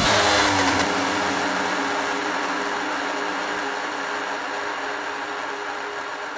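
A break in a hardstyle track: the kick drum has dropped out, and a held, droning synth chord over a hiss fades out slowly.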